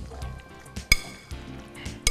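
A single sharp clink against a glass mixing bowl about a second in, ringing briefly, over soft background music.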